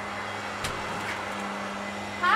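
Steady outdoor background noise with a constant low hum, and a single click about two-thirds of a second in as the front door is unlatched and opened.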